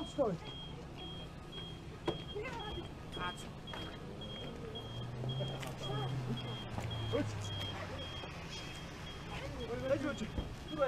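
A vehicle's electronic warning beeper sounding a short high beep about twice a second. A vehicle engine hum swells in the middle, with scattered clicks and brief voices around it.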